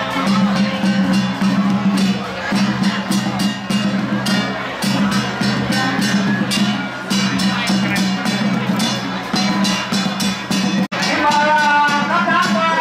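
Drum-and-percussion procession music keeping a quick, steady beat, about four strokes a second, over a sustained droning tone, with crowd voices underneath. It cuts out abruptly for an instant near the end, and a voice rises over the music after it.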